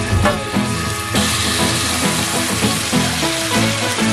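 Marinated beef slices sizzling in hot oil in a nonstick frying pan, the sizzle growing louder about a second in as more meat is in the pan. Background music plays underneath.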